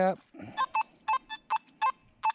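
Nokta Makro Simplex metal detector in park mode sounding six short, high beeps as its coil is swept back and forth over a steel bottle cap buried four inches deep.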